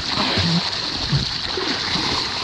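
Water splashing and churning as a small plastic kayak capsizes and its paddler goes under, the paddle thrashing the surface.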